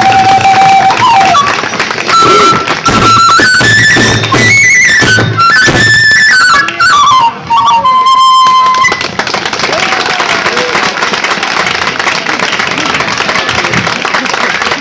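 Kagura hayashi ensemble: a bamboo fue flute plays a melody of held, stepping notes over taiko drum strokes and hand cymbals, and the music ends about nine seconds in. Applause follows to the end.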